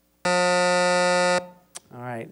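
Quiz-show buzzer sounding one loud, steady buzz for just over a second, then cutting off. It signals that the time to answer has run out.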